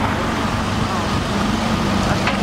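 Steady road traffic noise, with the low engine drone of a passing heavy vehicle growing in the second half.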